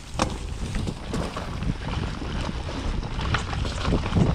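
Mountain bike descending a dirt trail at speed: wind buffeting the action camera's microphone over a steady rumble from the tyres, broken by several sharp knocks and rattles from the bike over bumps, the loudest about a quarter second in.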